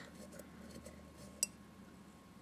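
A single sharp clink of a paintbrush against a glass jar about one and a half seconds in, with only faint rustling of the brush on the sponge otherwise.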